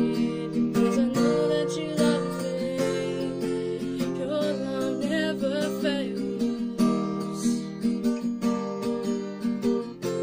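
Crafter acoustic guitar strummed in steady chords, with a solo voice singing the melody over it.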